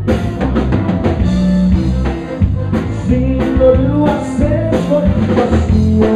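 Live Tejano band playing: an accordion carries the melody over electric bass guitar, drum kit and congas, with a steady dance beat.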